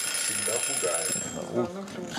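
Steady high-pitched electronic warning tone from the digital game clock, signalling that a player's time is running out; it cuts off about a second in.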